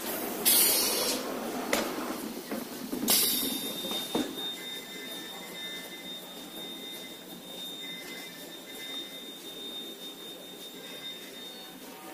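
Spiral paper tube making machine running, with two short loud hissing bursts, one about half a second in and one about three seconds in, followed by a thin steady high whine over the machine's running noise.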